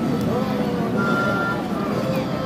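Busy outdoor crowd ambience: many people talking at once in a steady murmur of voices, over a dense low background hum.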